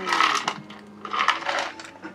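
A drinking cup tipped up to the mouth, with a clinking rattle from inside it in two short bursts about a second apart.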